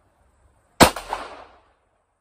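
A single sport pistol shot fired about a second in, sharp and loud, its echo dying away within about a second.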